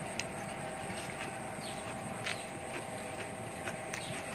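A person eating noodles and fresh vegetables: chewing and mouth smacks, with a few sharp clicks scattered through, over a steady background hiss.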